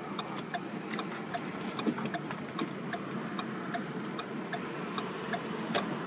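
Car turn-signal indicator ticking steadily for a right turn, over the car's engine and road noise inside the cabin.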